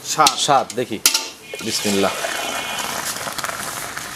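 Fresh milk poured from an aluminium milking bucket into a plastic measuring mug: a sharp metal clank about a second in, then a steady splashing hiss of the pouring stream for the rest of the time.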